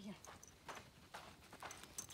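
Footsteps on loose arena sand, a faint soft crunch a little over twice a second.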